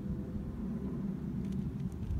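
Steady low rumble of outdoor background noise with no distinct event.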